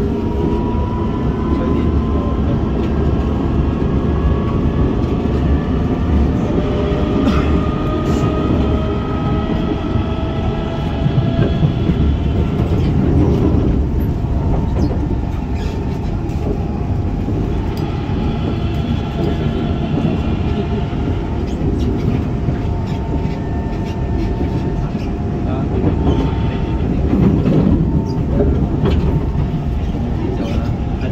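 Kawasaki C151 metro train heard from inside the car while running at speed: the traction motors whine in several tones that rise slowly as the train gathers speed, then hold steady, over a continuous wheel-and-rail rumble with scattered clicks.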